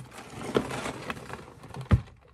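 A cardboard Lego set box being handled and lifted out of a cardboard shipping box: cardboard rustling and scraping, with a single thump just before the end.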